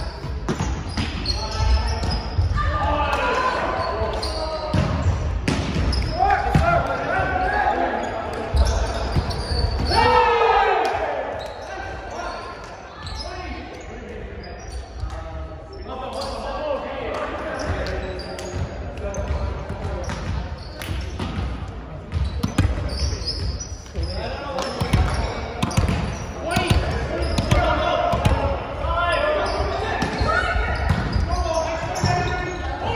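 Volleyball players calling out and talking, with repeated ball thumps on a hardwood floor, all echoing in a large gymnasium. The loudest call comes about ten seconds in, and the voices drop off for a stretch in the middle.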